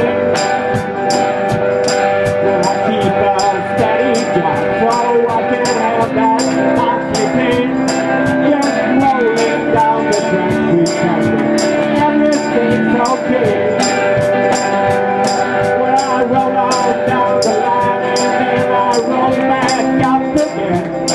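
Live acoustic band playing an instrumental passage of a country-blues song, with string instruments and hand percussion keeping a steady beat of about two to three strikes a second.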